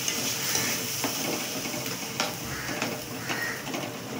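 Watery curry gravy sizzling in a black kadai while a metal spatula stirs it, scraping and knocking against the pan a few times. The hiss of the sizzle fades gradually.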